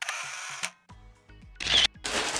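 Camera shutter sound effects: a sudden noisy shutter burst at the start lasting about half a second, a few light clicks, then a louder, short burst near the end.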